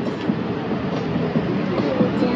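Steady rumbling background din with indistinct, muffled voices.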